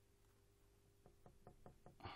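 Paintbrush dabbing acrylic paint onto a stretched canvas: a quick run of about six faint taps, roughly six a second, starting about a second in.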